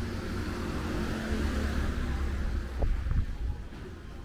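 A small van drives past close by. Its engine and tyres rise to a peak about three seconds in, then fade.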